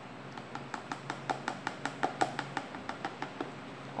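Homemade degreaser solution glugging as it is poured from a plastic container into a plastic bottle: a quick run of short gurgling pulses, about six a second, that stop shortly before the end.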